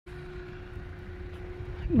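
Steady low rumble of vehicle engines in the street, with a faint constant hum over it.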